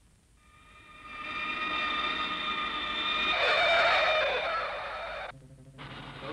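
Cartoon sound effect of an airliner landing: a steady, many-toned jet whine fades in and holds. About three and a half seconds in, a louder screech of tyres touches down, and the sound cuts off suddenly a little after five seconds.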